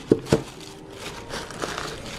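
Tissue paper rustling and crinkling as a shoe is pulled out of its wrapping, with two sharp knocks in the first half second.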